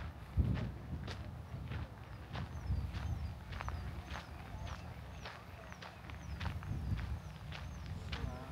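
Footsteps on a dirt path, walking at a steady pace of close to two steps a second, over a low wind rumble. From a couple of seconds in, a faint high chirp repeats at about the same pace.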